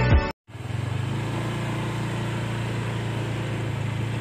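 Intro music stops abruptly just after the start and is followed by a brief silence. Then a vehicle engine, most likely a car's, runs steadily with an even low hum as it moves slowly along.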